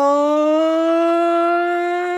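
A cartoon character's long wordless yell, held on one steady pitch and rising slightly at first.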